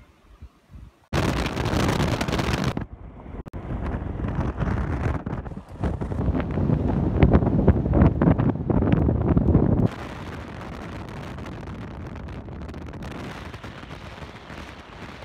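Wind buffeting and rushing over the microphone of a camera filming from a moving car, with vehicle road noise underneath. It cuts in suddenly about a second in and stays loud and rough. Near the ten-second mark it drops to a steadier, quieter rush.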